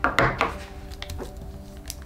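A plastic zip-top freezer bag is handled on a wooden table: a few short knocks and rustles, two of them in the first half-second, then lighter clicks as the zipper seal is pressed shut. Soft background music with steady held notes plays underneath.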